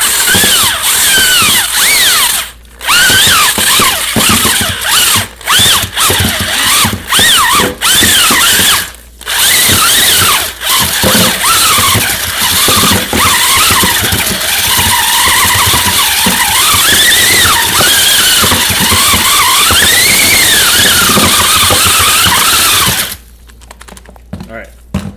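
Electric drill spinning a homemade welded-rod mixer through wet shredded-newspaper mulch in a plastic bucket. The motor whines loudly, its pitch rising and falling as the speed changes. It stops briefly a few times and cuts off about a second before the end.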